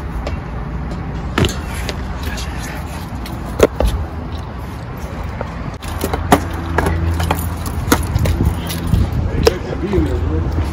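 Skateboards and shoes knocking against a metal fence as skaters climb over it: several sharp knocks, the loudest about a third of the way in and again past the middle. Under them runs a low rumble of handling noise on the microphone.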